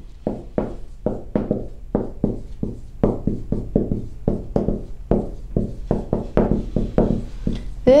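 Dry-erase marker writing on a whiteboard: an irregular run of short strokes, a few each second, as the letters of a sentence are written out.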